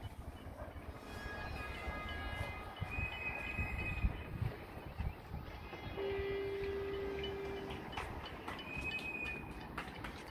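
Distant horns sounding across the city during the clap for carers: several held tones at once, then one long steady horn note for about two seconds a little past halfway. Scattered faint claps and a low rumble of wind or traffic go on underneath.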